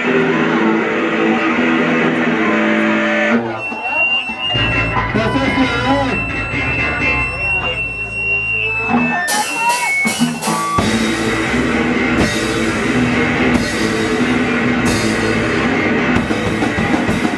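Live d-beat hardcore punk band. The distorted electric guitar plays chords, then drops to a sparse passage of low notes with high sustained tones. About eleven seconds in, the drums crash in and the full band plays at full tilt.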